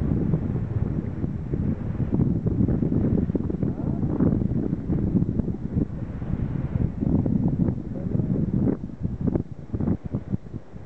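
Wind buffeting the camera microphone: a loud, gusty low rumble throughout.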